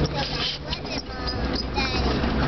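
A jeep's engine running and the noise of the ride over a dirt trail, heard from inside the cab, with faint voices in the background.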